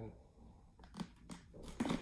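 Small plastic clicks from a Scorpion Exo 510 Air helmet's visor mechanism as the visor is worked and swung up: two sharp clicks about a second in, then a short rustle of handling near the end.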